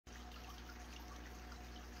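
Faint trickling and dripping water from running aquarium equipment, over a steady low hum.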